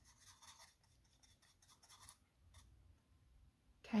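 A few faint scratches of a paintbrush working green paint in a plastic palette well.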